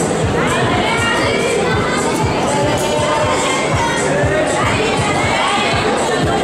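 Crowd of spectators, many of them children, shouting and cheering without a break, urging on a climber on the wall.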